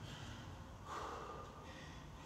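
A person breathing hard and out of breath from intense exercise: a few rough, noisy exhalations, the strongest about a second in.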